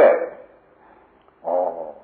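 A man's voice speaking Burmese in a recorded sermon: a word trails off at the start, there is a short pause, then a drawn-out vowel sound about a second and a half in.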